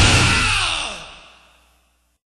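The end of an extreme metal track: the dense full-band sound breaks off about half a second in and rings out, with a falling glide in pitch, dying away over about a second.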